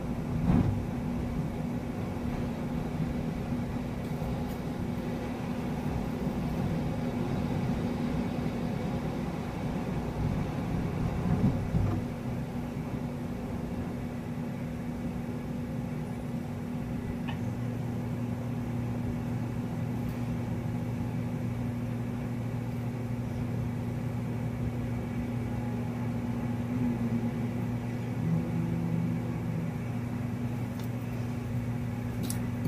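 A steady low mechanical hum, with a second, lower hum joining about halfway through and a couple of brief soft bumps near the start and around a third of the way in.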